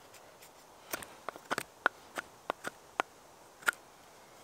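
Morakniv Bushcraft Orange stainless-steel knife cutting into a wooden stick: about ten short, sharp clicks and snaps at an irregular pace, the loudest about halfway through.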